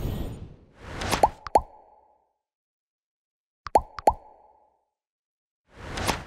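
Animated end-screen sound effects: a whoosh at the start, then two quick plops with a short rising blip about a second in. After a moment of silence comes another pair of plops just before four seconds in, and a second whoosh swells up near the end.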